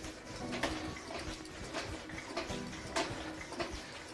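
Pro Ski Simulator's carriage swinging side to side under a skier in ski boots: a quiet rolling swish with faint knocks about once a second as it reaches each side.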